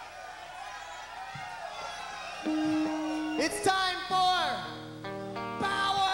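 Live rock band on stage: after a quieter stretch of voices, an electric guitar holds a note about halfway through and then plays a stepped run down the scale, with loud falling yells over it.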